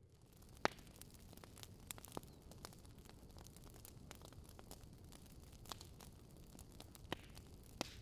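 Wood fire burning quietly: a faint soft crackle with scattered sharp pops from the logs, the loudest about half a second in and two more near the end.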